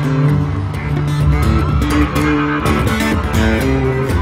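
Amplified acoustic guitar being strummed and picked over held upright bass notes, played live with no singing.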